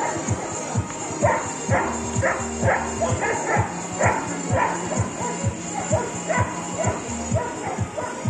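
A large dog barks repeatedly, about two barks a second, most densely in the first half. Music with a steady beat plays underneath.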